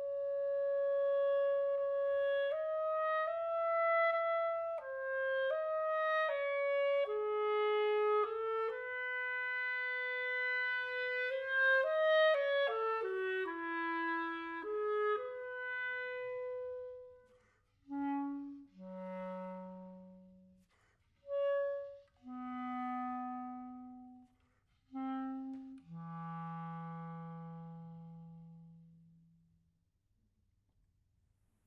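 Solo clarinet (Buffet-Crampon RC Prestige, Vandoren B40 Lyre mouthpiece and V12 reed) playing a repertoire excerpt. The first 17 seconds are a flowing connected line. Then come short separate notes with pauses, dropping into the low register and ending on a long held low note that fades away.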